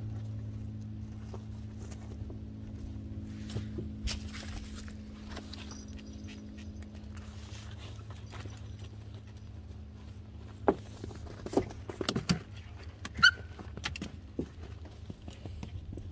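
Mini goldendoodles scuffling and playing on artificial turf, with a few short, sharp dog sounds and knocks in the last third, over a steady low hum.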